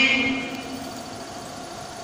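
A man's voice with long, held syllables ends in the first half second. A pause of steady low room noise in a large hall follows.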